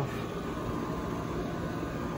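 Steady background hum and hiss with a faint high tone running through it, even throughout with no knocks or starts.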